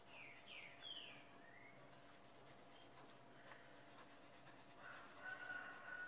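Faint scratching of a colored pencil rubbed over paper, a white pencil being worked over green pencil coloring. In the first two seconds there are four short high chirps, and a thin steady whistle comes in near the end.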